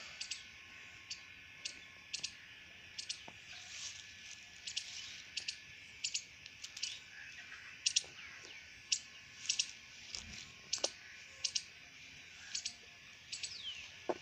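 Small birds chirping in short, sharp, irregular calls, several a second, with a steady high hiss behind them.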